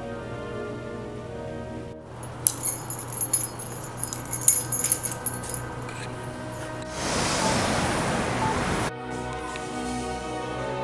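Background music cuts out about two seconds in, giving way to a run of light clinking and jangling. A loud burst of rustling close to the microphone follows, typical of a handheld camera being moved. The music comes back near the end.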